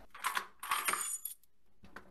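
Small metal pieces jingling and clinking for about a second, with a faint high ringing, then quieting.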